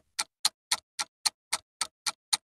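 Clock-ticking sound effect, about four sharp ticks a second, counting down the time left to answer a quiz question.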